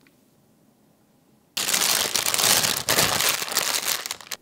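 Thin plastic piping bag, filled with batter, crinkling as it is handled and gathered at the top, starting suddenly about a second and a half in.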